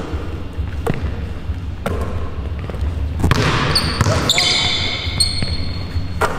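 A basketball bouncing and slapping into hands on a hardwood gym floor, a few separate thuds. High squeaks, typical of sneakers on the court, follow in the second half.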